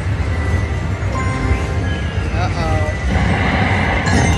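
Video slot machine game sounds as the reels spin and stop: electronic music with a few short falling chime notes a little past two seconds in, then a brighter jingle from about three seconds in. Underneath is a steady low casino hum with background voices.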